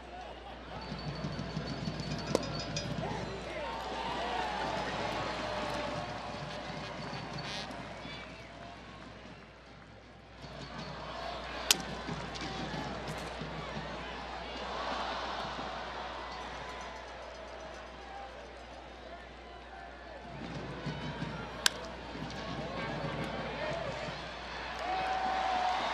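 Ballpark crowd murmur with indistinct voices, broken three times by a single sharp crack of the pitched baseball: a few seconds in, about halfway through, and near the end.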